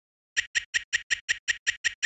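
Cartoon footstep sound effect: a run of about ten quick, evenly spaced ticks, some six a second, starting about a third of a second in, for a larva shuffling along a tightrope.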